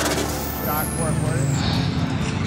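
Engine of a modified diesel pickup running, a steady low rumble, with a high whistle falling in pitch over about a second. Background music and faint voices are mixed in.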